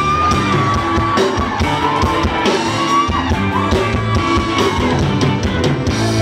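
A live band playing an upbeat groove on drum kit, electric guitar and keyboard, with a high held melody line over the top and some shouting.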